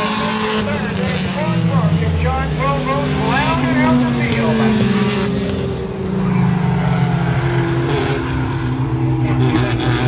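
Pure stock race cars' engines running hard as they pass on the short-track oval, one dropping in pitch as it goes by about two seconds in. Voices can be heard over the engines in the first few seconds.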